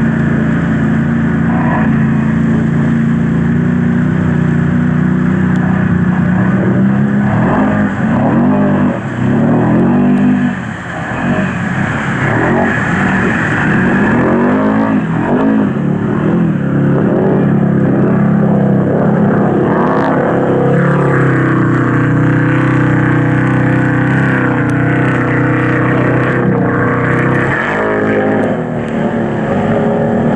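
Can-Am ATV engines running under load through deep water, with water splashing. The engine note rises and falls several times in the middle, as the throttle is blipped, then holds steadier.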